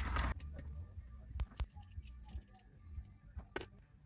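Light clicks and small metallic clinks from a hand tool working the mounting screws of a wall-mounted towel rack, over a low steady hum. There is a short scrape at the very start, then sparse sharp clicks.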